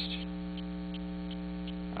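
Steady electrical mains hum with a stack of evenly spaced overtones, picked up on the recording, with faint regular ticks about three a second.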